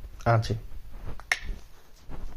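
A man says a couple of words, then a single sharp click sounds about a second later.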